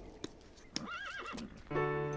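A horse whinnying once, a short wavering call about a second in. Background music comes in just before the end.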